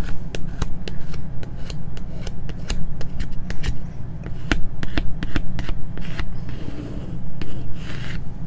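A plastic vinyl squeegee scraped in repeated strokes over transfer tape and vinyl lettering on a painted wooden block, giving scratchy rubbing with many sharp clicks. A steady low hum runs underneath.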